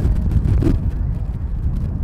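Wind rumbling on the microphone: a loud, gusting low rumble, with a brief sharper noise about two-thirds of a second in.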